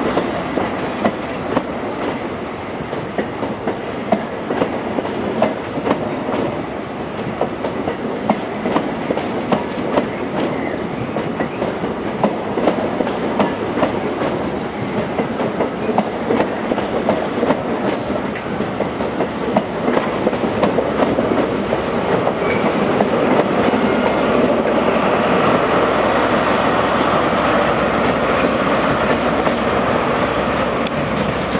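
A CrossCountry High Speed Train's coaches rolling past, their wheels clicking rapidly and irregularly over the rail joints under a continuous rumble. In the last few seconds the sound grows louder as the Class 43 diesel power car at the rear draws near.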